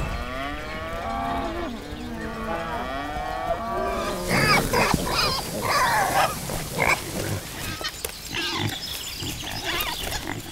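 Several cows mooing, their long calls overlapping, for the first four seconds. Then pigs and piglets grunt and squeal in short, sharp bursts through to the end.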